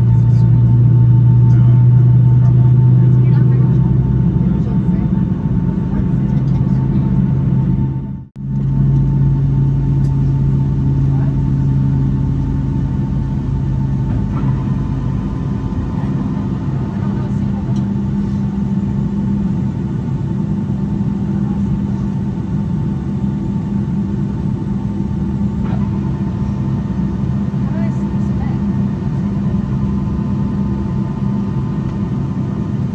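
Boeing 757-200 cabin noise while taxiing: a steady engine and airframe drone with low humming tones. The sound drops out for an instant about eight seconds in, and the low hum shifts to a slightly higher tone about halfway through.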